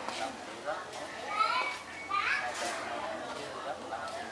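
Children's high-pitched voices calling and chattering in the background, loudest around the middle, over a murmur of other talk.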